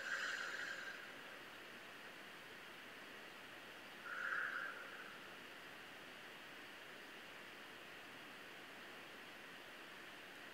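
Faint steady room hiss with two soft breaths, one right at the start and one about four seconds in, each lasting about a second.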